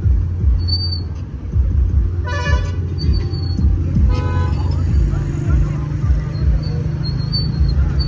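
A vehicle horn honks twice, a half-second blast about two seconds in and a shorter one about four seconds in, over a steady low rumble.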